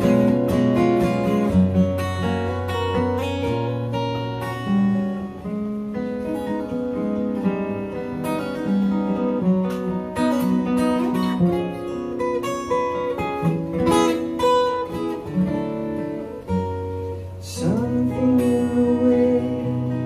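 Two acoustic guitars playing together in an instrumental passage of a song.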